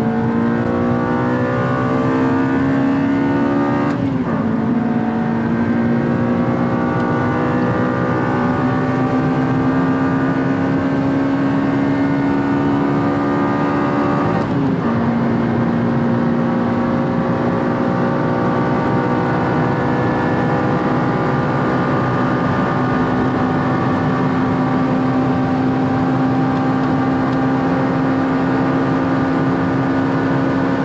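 Honda Civic Si's 2.0-litre i-VTEC four-cylinder engine under full-throttle acceleration, heard from inside the cabin. The engine note climbs steadily, with two upshifts: the first about four seconds in, the second about halfway through. At each shift the pitch drops sharply, then rises again in the next gear.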